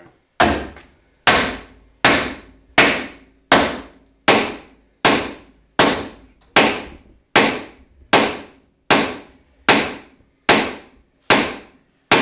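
Sledgehammer blows driving a metal bolt down into stacked wooden planks: a steady run of about fifteen sharp, evenly spaced strikes, a little under one a second. The bolt is going down into the wood.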